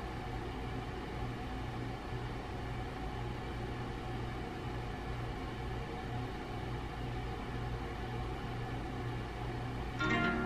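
A steady low mechanical hum with a few faint constant whining tones over it, unchanging throughout: background machinery running in a small room.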